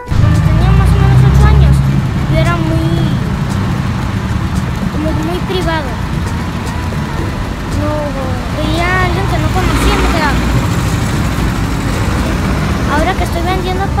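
Road traffic running steadily along a city street, with a vehicle's low rumble loudest in the first two seconds. A child talks over it.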